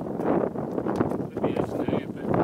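Indistinct voices, too unclear to make out words, with the steps of hikers climbing a grassy slope on trekking poles.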